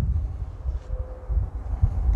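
Wind rumbling on the microphone, uneven and low, with a faint steady tone joining about a second in.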